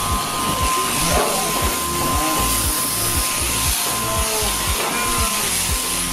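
Background music with a steady beat, over a steady hiss.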